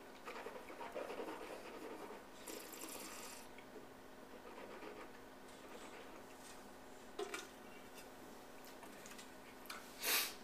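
Faint sipping and slurping of wine from a glass, with breathing through it and a short breathy hiss about two and a half seconds in. A couple of light knocks follow later.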